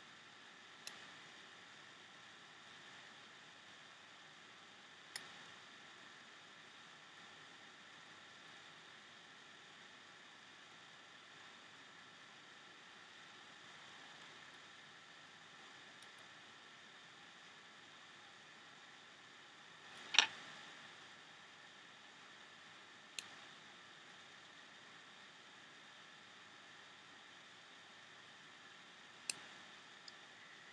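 Faint steady hiss with a handful of short sharp clicks from rubber loom bands being handled and worked off a piece of banded work by hand; the loudest click comes about twenty seconds in, and two more come close together near the end.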